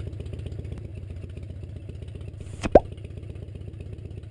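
Cartoon motorcycle engine sound effect idling steadily with a low, even throb. About two-thirds of the way in, a short cartoon 'plop' sound effect whose pitch drops quickly.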